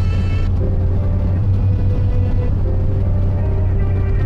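Steady low drone of a car's engine and road noise heard inside the cabin while driving, with faint held musical tones over it.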